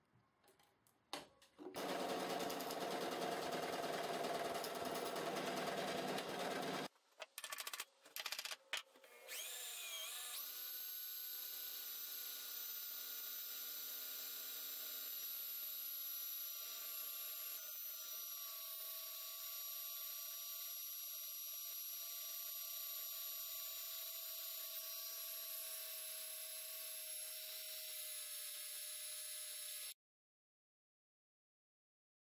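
Drill press driving a spindle into a clamped wooden board to make friction char: a loud run of about five seconds, a few quick stops and starts, then the motor spins up with a rising whine and runs on steadily.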